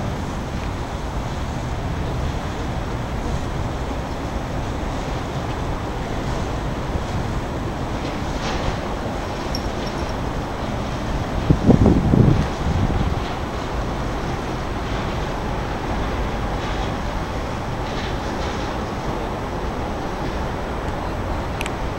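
Steady outdoor background noise, mostly a low rumble, with a brief louder rumbling swell about halfway through.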